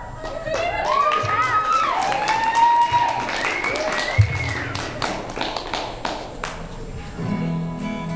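Audience whooping and cheering with scattered clapping, many voices calling in rising-and-falling "woo"s. About seven seconds in, an acoustic guitar chord starts ringing.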